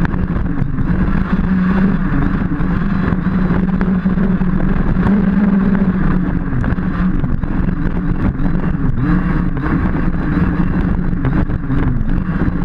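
Two-stroke gasoline engine of a Losi DBXL 1/5-scale RC buggy, heard from a camera mounted on the car, running hard at high revs with its pitch wavering as the throttle changes. Under it are the rush of tyres through grass and short knocks as the buggy hits bumps.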